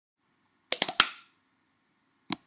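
Logo intro sound effect: a quick run of about four sharp clicks about three-quarters of a second in, the last ringing out briefly.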